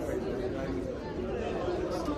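Steady background chatter of several people talking at once, no single voice or words standing out.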